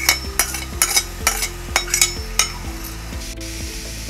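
A metal spoon taps and scrapes on a plate and an aluminium pot as chopped onion and garlic are knocked into the pot. The sharp clicks come about four a second for the first two and a half seconds, over a steady sizzle of frying.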